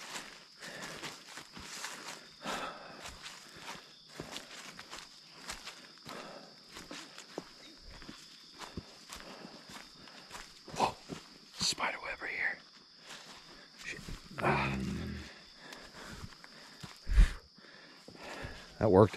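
Footsteps of people walking through forest undergrowth: an irregular run of short steps.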